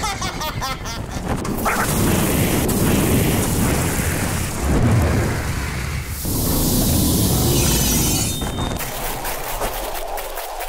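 Sound effects of an animated action scene: a deep, continuous rumble with booms, and a rushing, hissing noise that swells about six seconds in.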